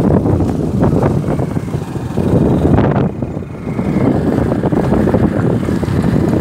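Wind buffeting the microphone of a camera on a moving vehicle, mixed with motorcycle engine noise; the rumble swells and dips unevenly.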